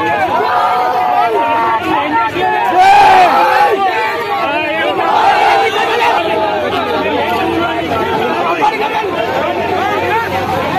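A crowd shouting over one another during a street scuffle, many raised voices at once with no single voice clear. It is loudest about three seconds in.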